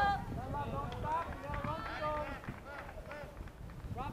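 Several distant, high-pitched voices shouting and calling out during a soccer game, over a rough low rumble.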